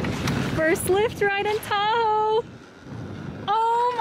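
Excited, high-pitched wordless vocal exclamations, twice, with a pause between, over a rushing noise that is strongest at the start.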